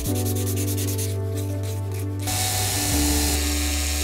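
Sandpaper rubbed by hand on a strip of hardwood in quick back-and-forth strokes, turning into a steadier, denser hiss about two seconds in, over background music.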